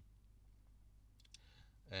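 Near silence, a pause in speech, with a few faint clicks about a second in and a faint breath just before the voice returns at the end.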